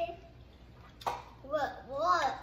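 A short click about a second in, then a high-pitched voice speaking or vocalizing without clear words.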